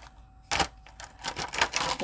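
A sharp click about half a second in, then a run of quick clicks and rattles: the packaging of a magnetic eyeliner and lash kit being handled as the eyeliner is worked out of it.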